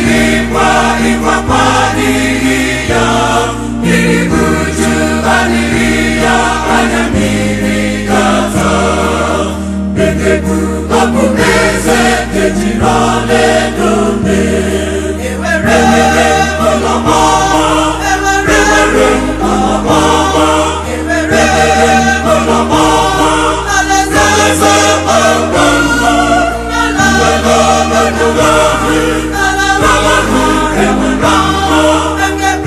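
Church choir of men and women singing a gospel song in Igbo, over an instrumental backing with a stepping bass line and a steady beat.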